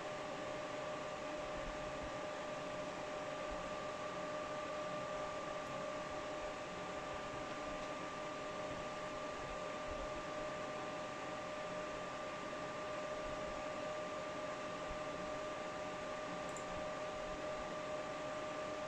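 Graphics-card cooling fans of a crypto-mining rig running steadily at about 80–90% speed: a constant airy whoosh with a steady whine under it. A faint click near the end.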